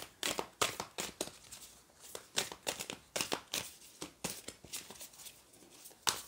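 A tarot deck being shuffled by hand: short papery slaps and rustles of the cards, about three a second, with brief pauses around two and four seconds in.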